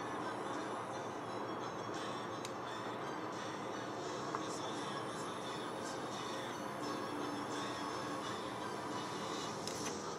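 A person vaping a mechanical e-cigarette mod: a long exhale of vapour, then another draw on the atomizer near the end, over a steady background hiss with faint music-like tones. A few faint clicks come through.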